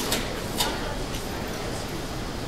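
Airport terminal ambience: a steady bed of distant voices and background noise, with a few sharp clacks in the first second, the loudest about half a second in.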